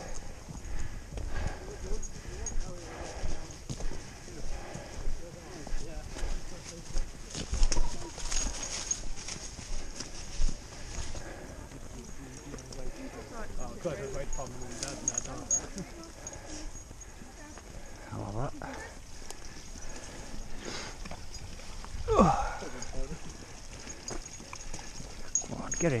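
Steady footsteps of a walker on a soft dirt woodland path, close to the microphone, with other people talking quietly in the background.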